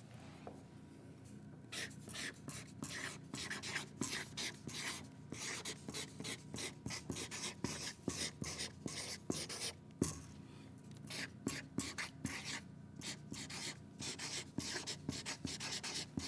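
Felt-tip marker scratching across chart paper on an easel in quick short strokes as words are written, starting about two seconds in, with a brief break about ten seconds in.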